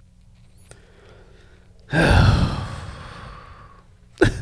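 After a quiet first half, a man lets out one long audible sigh that falls in pitch and fades over about two seconds.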